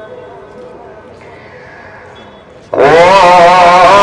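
A faint melodic voice fades out over background noise. Then, a little under three seconds in, a loud, wavering, melodic chanting voice starts suddenly and breaks off abruptly.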